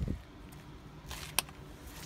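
A person climbing into a sports car's low seat: a dull thump at the start, a short rustle about a second in, then a sharp click, over a faint steady low rumble.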